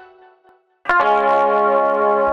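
A fading note from an intro jingle dies away. About a second in, a live band's keyboard and electric guitar strike a chord together and hold it, opening a song.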